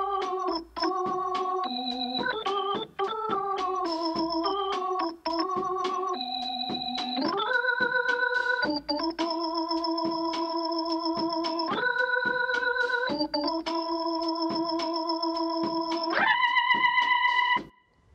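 Soloed electric organ track set to a Hammond B3-style tone and overdriven, playing chords. Shorter, changing chords come first; from about seven seconds in, long held chords with a slight wavering vibrato follow, stopping just before the end.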